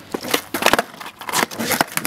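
Skateboard on rough asphalt just after landing a flip trick: the wheels rolling, with several sharp clacks and knocks from the board.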